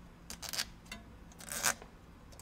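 A motorcycle cam cover gasket being slid over lineup studs and pressed into place by hand: a few short scraping rustles, the clearest about half a second in and again past the middle.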